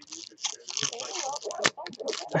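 Foil wrapper of a Bowman Chrome baseball card pack crinkling and tearing as it is pulled open, with a sharp crackle about three-quarters of the way through.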